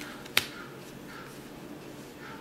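A single sharp click about a third of a second in, over a faint steady hum.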